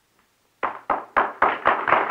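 An audience clapping: sharp claps at about four a second begin a little over half a second in and thicken into applause.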